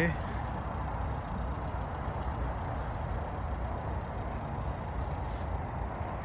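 Vauxhall Vivaro's 1.6 CDTI four-cylinder diesel engine idling steadily, a low rumble.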